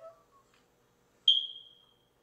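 A single high-pitched beep that starts sharply a little past halfway and fades out over about half a second.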